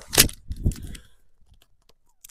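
Adhesive tape being ripped: one short, sharp rip about a quarter second in, then a softer tearing rustle about half a second later.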